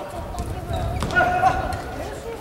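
Badminton rally: sharp racket strikes on the shuttlecock, the clearest about a second in, amid the thud of players' footwork on the court.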